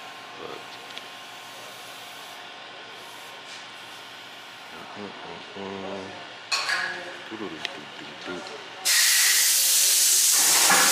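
A loud, steady hiss of escaping pressurised gas starts abruptly near the end, at the tires being worked on. Before it there is quiet shop background with a distant voice and a metallic clank.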